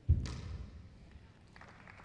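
A single loud thump on a squash court about a tenth of a second in, ringing out briefly in the hall, then low room noise.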